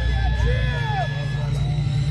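Live metal band's distorted guitars and bass holding a steady, heavy low drone, with crowd voices shouting in short bursts over it.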